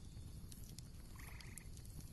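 A short, faint trilled animal call a little past halfway through, over quiet background hiss.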